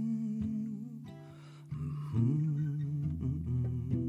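Solo acoustic guitar picked slowly under a wordless male vocal line, held notes with a slight waver, sung or hummed before the lyrics begin.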